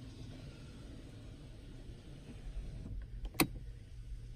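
Power sliding rear window of a 2017 Ram 1500 running on its electric motor, a low steady hum, until it stops with one sharp click about three and a half seconds in.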